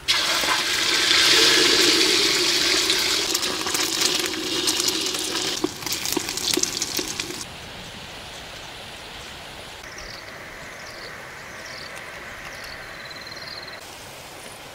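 Beaten goose eggs with chopped herbs poured into hot oil in a large wok, sizzling and spattering loudly for about seven seconds before cutting off abruptly. A quieter background follows, with a run of short, high, falling chirps near the end.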